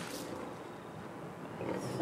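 Cartoon mountain lion and bear growling as they maul a body, a rough, noisy animal sound.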